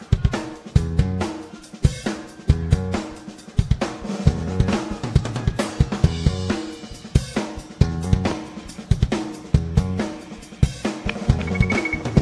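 Rock band playing live: a drum kit drives a steady beat with snare, kick drum and cymbals over repeating low instrumental notes, the instrumental opening of the song before the vocals come in.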